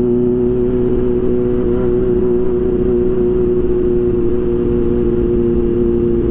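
Kawasaki Ninja H2's supercharged inline-four engine cruising at a steady low city speed, its note holding one even pitch, heard from the rider's seat with wind noise on the microphone.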